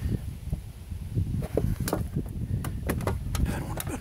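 Screwdriver prying at the sheet-metal cover of an electronics box, with scraping and a string of sharp metal clicks and knocks, coming thicker in the second half.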